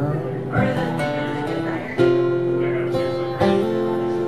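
Acoustic guitar playing a slow picked accompaniment, with new chords struck about half a second, one, two and three and a half seconds in and left ringing.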